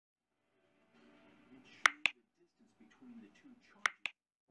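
Computer-mouse click sound effects for a subscribe-button animation: two quick sharp clicks about two seconds in and two more near the end, over a faint voice.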